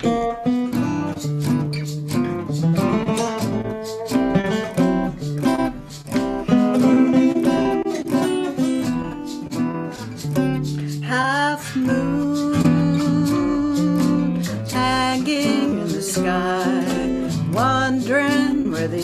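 Two acoustic guitars playing the instrumental intro of a folk song, strummed and picked, starting together right on the count.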